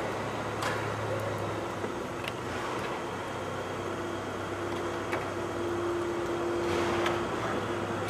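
Steady hum of an indoor arena, with a steady tone in the middle and a few faint knocks.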